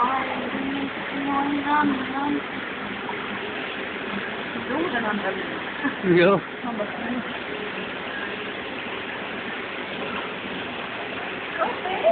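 A steady rushing background noise, with scattered brief voices over it and a short spoken "ja" about six seconds in.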